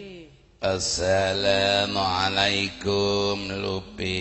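A dalang's sung chant (suluk): a man's voice in long, held, wavering notes, starting about half a second in after a brief hush.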